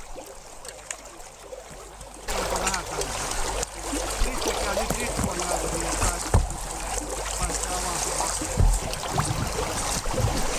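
Lake water and broken ice slush splashing, with ice chunks clinking and knocking, as people in a hole in lake ice struggle to climb out onto the edge. About two seconds in it gets suddenly louder, with a low rumble like wind on the microphone.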